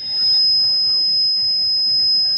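Public-address feedback: a loud, steady, high-pitched whine that swells up in the first moment and holds one pitch, with a fainter overtone above it.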